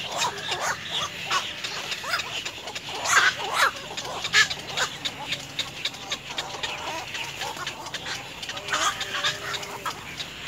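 Birds calling: a busy series of short, harsh calls and chirps at irregular intervals, loudest a few seconds in.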